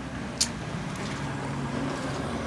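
Shopping cart wheels rolling over a concrete sidewalk, a steady rumble with a single sharp click about half a second in.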